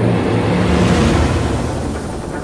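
Dark, cinematic intro music: a rumbling swell with low sustained tones under a noisy wash, peaking about a second in and then easing slightly.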